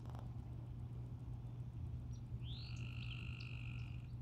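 A frog calling: one long, high, even call that starts a little past halfway, rising briefly in pitch at its onset, over a steady low hum.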